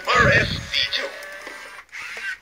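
Silver Robosapien V2 humanoid toy robot going through its power-up routine: a short vocal burst at the start, then the quieter whir of its arm motors as it swings its arms.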